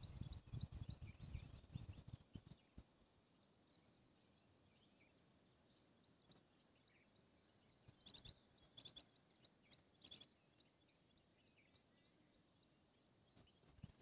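Faint outdoor ambience: short runs of quick high-pitched chirps throughout, with a low rumble on the microphone in the first couple of seconds.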